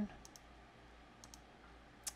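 A few faint computer mouse clicks over low room hiss, as an alignment tool is clicked in the CNC design software.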